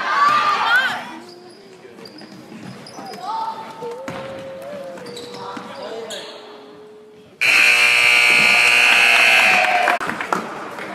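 Gymnasium scoreboard buzzer sounding one long, steady blast of about two and a half seconds, starting about seven seconds in, with the end of the game.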